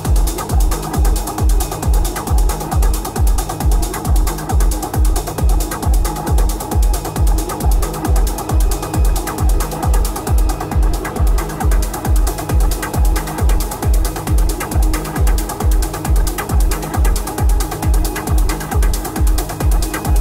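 Hypnotic techno: a steady four-on-the-floor kick drum at about two beats a second under dense, fast, clicking ratchet-like percussion and a busy mid-range synth texture.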